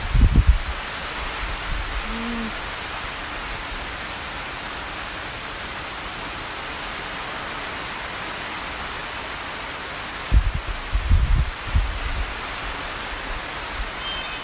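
Steady heavy rain falling on trees and garden plants, an even hiss. Low rumbles on the microphone break in about half a second in and again between ten and twelve seconds in.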